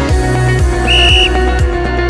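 Electronic background music with a steady beat. About a second in comes a short, high whistle blast that marks the end of the timed exercise interval.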